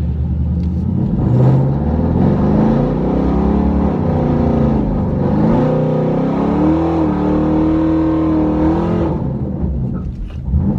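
Car engine heard from inside the cabin, revved up while the car sits still: the pitch climbs, dips, climbs again, then holds at a steady high rev for about two seconds before dropping off about nine seconds in.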